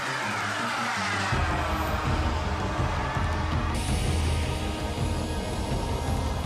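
A radio-controlled turbine jet's whine passing by, falling steadily in pitch and cutting off sharply about four seconds in, over background music with a steady beat.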